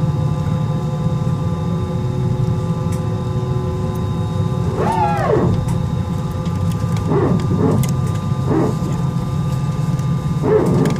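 Airbus A320 cabin drone on the ground: a steady low hum with a faint steady whine from the engines at idle. About halfway through, a short voice-like call rises and falls in pitch, and a few briefer voice-like sounds follow later.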